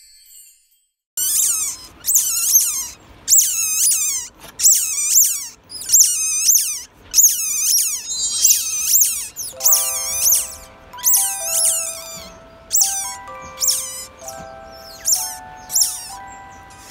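Newborn otter pups squeaking in a rapid, high-pitched series of short falling calls, about two a second, starting about a second in. Light bell-like background music joins about halfway through.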